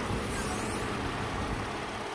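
2018 Chevrolet Impala's 3.6-litre V6 idling steadily under the open hood.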